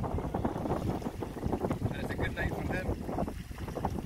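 Wind buffeting the microphone in a steady low rumble, with a few faint spoken words about two seconds in.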